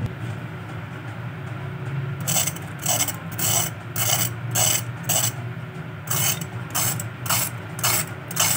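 Knife blade scraping and pressing into the crisp breadcrumb crust of deep-fried chicken bread balls, a string of dry crunches about two a second that starts about two seconds in. The crunch is the sign of a fully crisp fried crust.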